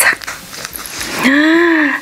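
Soft handling sounds of a key ring being clipped onto a wallet, then, from just past the middle, a woman's long wordless 'ooh' whose pitch rises and falls once.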